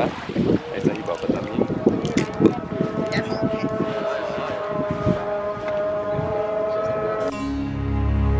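Hands splashing and clicking pebbles in shallow seawater at the shoreline, with a long, steady, held call from a distant loudspeaker, typical of the Muslim call to prayer, coming in about two and a half seconds in. Both stop suddenly near the end, where background music begins.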